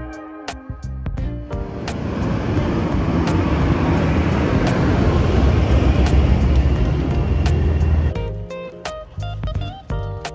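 Road traffic passing close by: a rushing, rumbling vehicle noise swells over a few seconds and cuts off suddenly about eight seconds in, over background guitar music.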